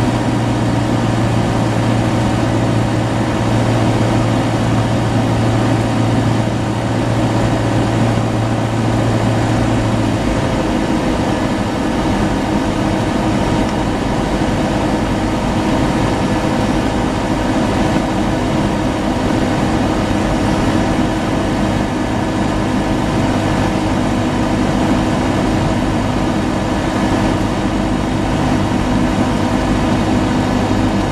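Cessna 172's piston engine and propeller running steadily, heard loud inside the cabin on final approach, with a slight shift in the engine's tone about ten seconds in.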